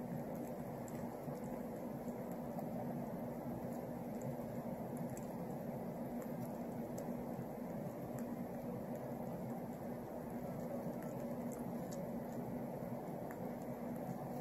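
Steady low hum and room noise, unchanging throughout, with a few faint scattered clicks.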